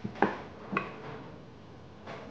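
A metal ladle clinks twice against a metal soup pot, about half a second apart in the first second, each with a brief metallic ring.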